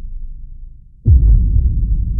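Deep bass throbbing with nothing higher in pitch. It dies down, then comes back with a sudden heavy bass hit about halfway through and carries on throbbing.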